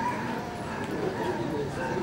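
Indistinct voices of several people talking at once, with no clear words.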